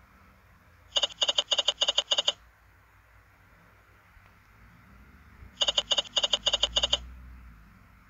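Online slot machine game's reel-stop sounds: a quick run of about five pitched tones as the five reels land one after another, heard twice for two spins, over a low steady hum.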